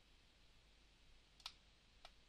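Near silence: room tone, with a single computer mouse click about one and a half seconds in.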